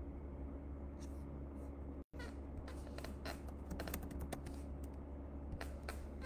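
Scattered light clicks and taps in irregular clusters over a steady low electrical hum, with the audio cutting out for an instant about two seconds in.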